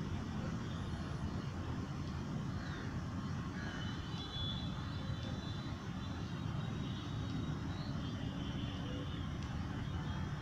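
Steady low rumble of outdoor background noise, even in level throughout, with faint high chirping tones now and then.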